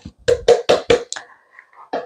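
Plastic canister of grated parmesan cheese shaken hard over a steel mixing bowl: a run of quick knocks, about five a second, that stops about a second in. One more short knock near the end.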